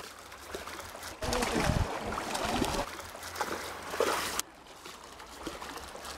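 Water splashing as a hooked sockeye salmon thrashes at the surface beside a landing net, loudest for about three seconds and then dropping away, with faint voices underneath.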